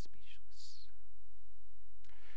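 A man's voice finishing a spoken word with a drawn-out "s" in the first second, then a pause with only a steady low hum.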